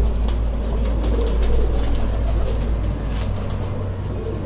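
Domestic pigeons cooing softly in a loft, over a steady low rumble.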